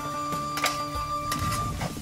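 Background music with long held notes, over a few short clinks and scrapes of a metal skimmer and ladle stirring food in a wok.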